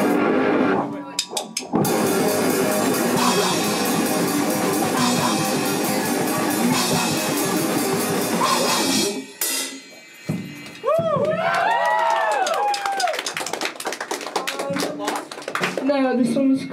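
A hardcore punk band plays live: drum kit and distorted electric guitar in a short, fast, loud burst of about seven seconds that stops abruptly. After a brief lull, a few guitar notes slide up and down in pitch.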